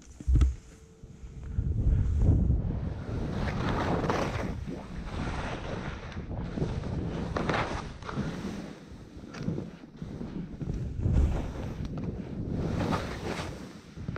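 Skis sliding and scraping through wet, sludgy snow, swishing in repeated surges, with wind rumbling on the microphone.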